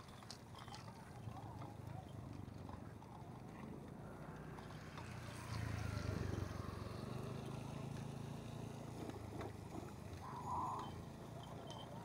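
Bicycle rattling and clicking over a rough dirt and gravel track, with a low wind rumble on the action camera's microphone that grows louder about halfway through.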